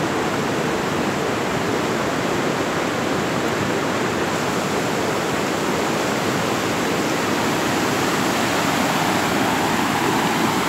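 Floodwater rushing in a swollen creek and pouring over a road in a steady roar, growing a little louder near the end.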